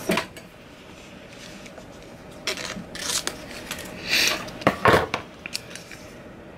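Short rustles and snips as a sheet of plastic transfer tape is handled and cut with scissors, with a louder knock about five seconds in.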